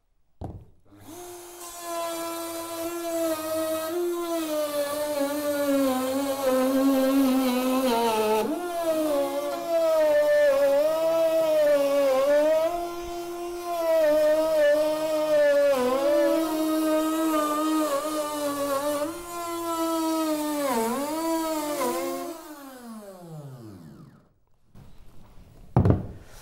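Corded electric flush-trim router with a bearing-guided bit cutting through OSB bracing panel. The motor whine starts about a second in, sags and recovers in pitch several times under the load of the cut, then winds down with a falling pitch and stops shortly before the end.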